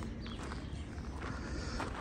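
Quiet outdoor ambience with a low steady rumble and a few faint footsteps on sandy, gravelly ground.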